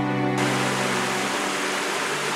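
Background music with held notes fading away, while the steady rush of water over a small stream waterfall cuts in about a third of a second in and carries on alone.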